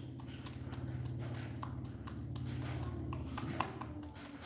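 H'mông chicken pecking feed from a clear plastic cup, its beak striking the cup in quick, irregular taps, one sharper tap about three and a half seconds in. A steady low hum runs underneath.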